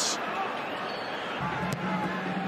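Stadium crowd noise, a steady murmur from the stands. A low, steady hum joins about one and a half seconds in, and a single sharp click follows shortly after.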